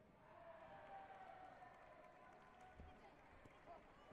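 Faint, indistinct voices echoing in a large sports hall, with one dull thump nearly three seconds in.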